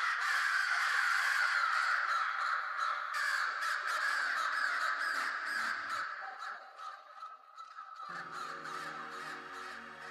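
A dense chorus of many birds cawing at once, starting abruptly. It thins out after about six seconds, and music with held notes comes in about eight seconds in.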